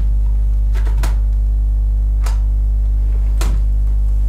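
Loud, steady electrical mains hum, a low 50 Hz buzz with its harmonics, picked up by the recording setup, broken by four brief soft clicks or rustles.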